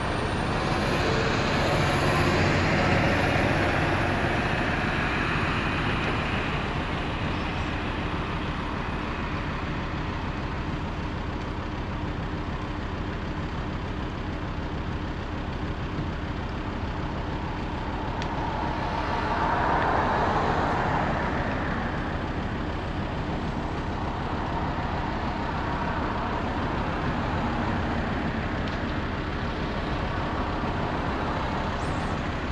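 Road traffic running by, a steady noise that swells twice as vehicles pass, once in the first few seconds and again about twenty seconds in.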